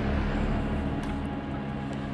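A low, steady rumble under a held hum, slowly fading.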